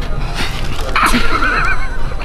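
A high, quavering whinny like a horse neighing, starting about a second in and lasting just under a second, after a couple of sharp knocks.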